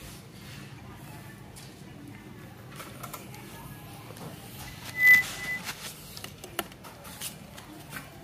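Faint, scattered clicks and knocks of a road bicycle being handled, with one short, steady, high-pitched whistle-like tone about five seconds in.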